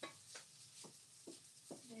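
Near silence: faint room tone with a few soft, brief clicks, and a voice just starting at the very end.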